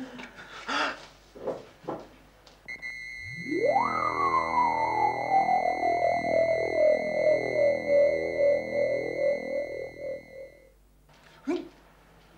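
Electronic synthesizer music cue: a theremin-like tone sweeps sharply upward and then slowly slides down over a dense sustained chord, with a steady high tone held throughout, lasting about eight seconds before cutting off.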